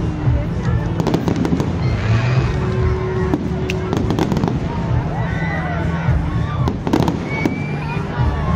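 Aerial fireworks shells bursting: sharp bangs and crackles, a cluster about a second in, more around three to four seconds, and the strongest pair near seven seconds.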